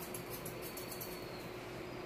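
Thinning shears snipping through a Yorkshire terrier's head hair: faint, scattered clicks of the blades closing, fewer near the end, over a faint steady hum.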